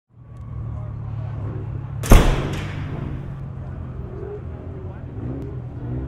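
A car engine running steadily at idle, broken about two seconds in by a single loud sharp bang, with faint voices in the background.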